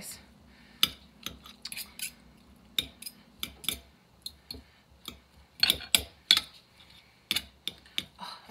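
Two metal forks clinking and scraping against a plate while shredding cooked chicken, in irregular taps with a louder cluster about six seconds in.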